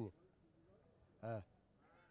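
A man's brief voiced hesitation sound, a single short 'eh' of about a quarter second that rises and falls in pitch, in an otherwise near-silent pause.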